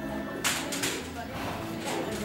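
Hook-and-loop (Velcro) fastener of a horse's leg wrap being pulled and pressed shut: a loud rasping tear about half a second in, with a shorter rasp near the end.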